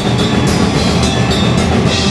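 Hardcore punk band playing loud and fast: distorted electric guitar over drums, with drum and cymbal hits several times a second.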